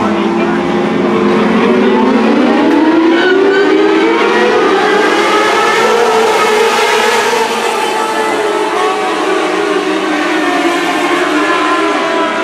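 A pack of modlite race cars accelerating together, many engines overlapping, their pitch rising over the first few seconds and then easing a little.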